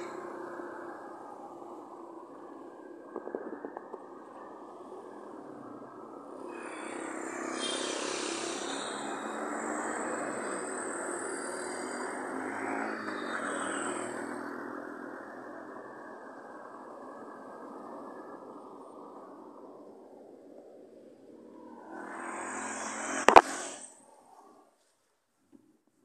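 Street traffic: a vehicle passes slowly, its engine and tyre noise swelling and fading through the middle stretch, then a motorcycle goes by near the end. A single sharp knock sounds just before the end.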